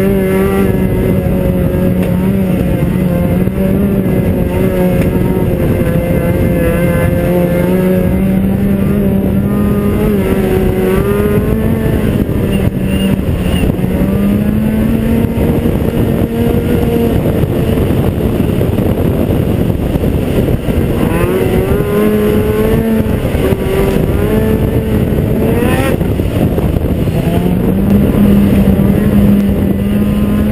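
Ski-Doo XP snowmobile's 600 SDI two-stroke twin engine running under way, its pitch steady at first and then rising and falling several times with the throttle.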